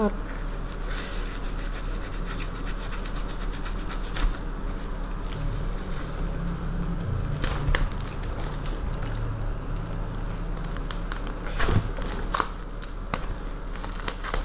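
A kitchen knife cutting and scraping at tape-wrapped plastic packaging, with scattered crinkles and clicks at irregular moments over a steady low hum.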